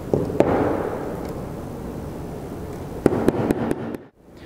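Hammer driving a steel roll pin into a tapping machine's clutch assembly: two sharp knocks in the first half second, then a quick run of about six strikes near the end.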